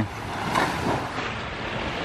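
Small waves washing onto a sandy beach, a steady wash, with wind blowing on the microphone.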